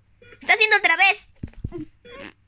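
A high-pitched, wavering vocal cry, then a few short, soft knocks shortly before the end.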